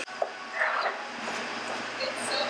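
Commercial kitchen background: a steady hiss and low hum, with a short voice-like sound about half a second in.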